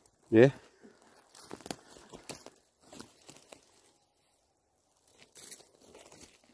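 A wooden stick prodding and prying into dry pine needles, twigs and forest soil, digging around a mushroom: scattered crackles and small snaps for a couple of seconds, then a pause and a brief scrape near the end.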